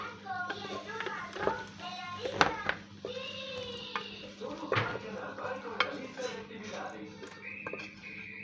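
Children's voices talking and singing in the background, with several sharp clicks and knocks over a steady low hum.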